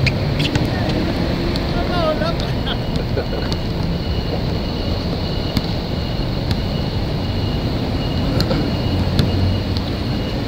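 Open-air basketball court sound: a steady low rumble underneath, with scattered sharp knocks of a basketball bouncing on the court and hitting the hoop. People laugh about halfway through.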